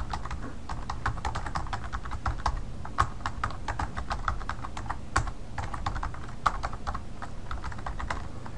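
Typing on a computer keyboard: a quick, uneven run of key clicks, several a second, over a faint low hum.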